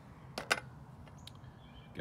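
Two quick, sharp clicks close together about half a second in, followed by a few faint ticks, over a quiet background.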